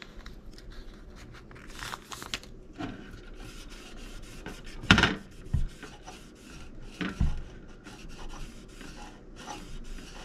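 Paper sticker being peeled from its backing and rubbed down onto a circuit board by hand, a continuous light paper rustle and rub, with a few louder handling bumps about five and seven seconds in.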